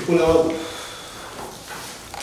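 Speech only: one short spoken reply, then low room sound in a small meeting room.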